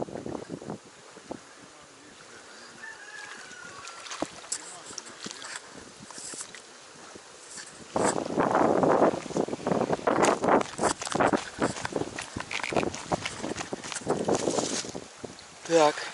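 Reed stems and grass rustling and crackling against the microphone while the camera is handled and moved. It starts suddenly about eight seconds in, after a quieter stretch of faint outdoor background, and comes with some wind on the microphone.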